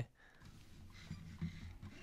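Faint room tone: a quiet pause with a low, even hum and a few soft small noises.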